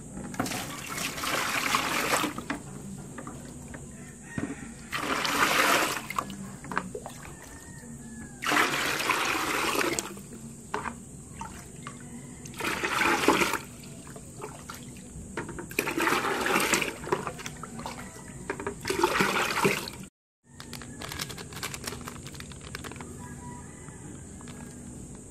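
Water poured from a plastic dipper into a plastic bucket, six separate splashing pours of a second or two each, repeated every few seconds.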